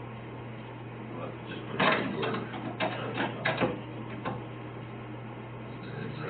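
A quick run of clicks and rustles, the sound of equipment being handled, for about two seconds near the middle, over a steady low hum.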